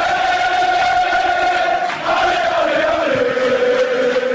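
Channel intro sting of a crowd chanting a long held note, which steps down to a lower note about three seconds in and then fades.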